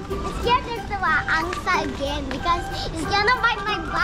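Young children's voices: excited high-pitched chatter and calls from small girls at play.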